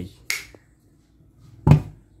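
A wall switch clicks on shortly after the start, then near the end a heavy thump as the electric iron is handled and set down on the cloth-covered pressing surface.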